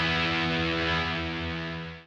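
One big distorted electric guitar chord left ringing, fading slowly in the second half and cut off at the very end.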